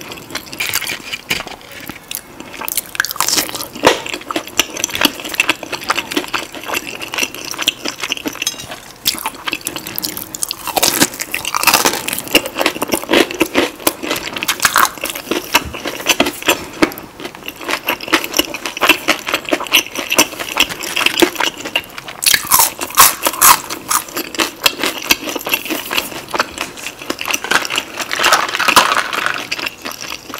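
Close-miked crunching and chewing of a crispy fried Popeyes spicy chicken tender: crackly crunches as the breading is bitten and chewed, with louder bursts of crunching now and then.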